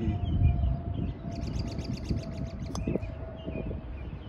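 Birds chirping, with a quick trill just past the middle, over an irregular low rumble of wind on the microphone. About three-quarters of the way through comes a single light click of a putter striking a golf ball.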